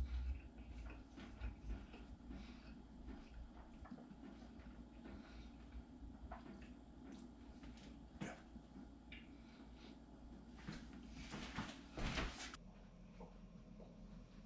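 Faint mouth noises of chewing and small rustles and clicks from a sandwich bun being handled in the hands, with a short denser patch of crackly rustling near the end.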